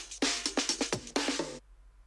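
A 128 BPM drum break loop previewed from a sample library: a fast run of kick, snare and cymbal hits that cuts off suddenly about one and a half seconds in.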